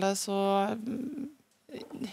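A person's voice between sentences: a long held hesitation sound, then a low creaky 'eh', a short pause, and speech beginning again near the end.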